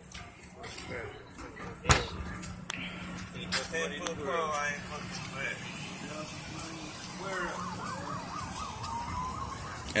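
A siren's fast up-and-down warble starts about seven seconds in and gives way to a rising tone, over background chatter. A sharp click comes about two seconds in.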